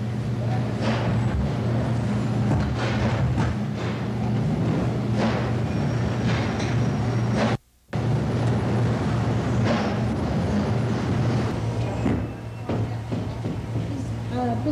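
Busy clatter of pans and bakery equipment being shifted and cleared, over a steady low machine hum, with a brief dropout to silence about halfway through.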